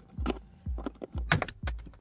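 Plastic trim parts clicking and knocking as a plastic pry tool works a small snap-in cover cap loose from the car's interior kick-panel trim: a few scattered knocks, with a quick cluster of sharp clicks about two-thirds of the way through.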